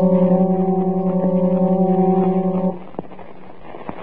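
Radio-drama sound effect of an electric telescope drive motor: one steady, loud humming tone that stops about two-thirds of the way through, on an old broadcast recording with no high treble.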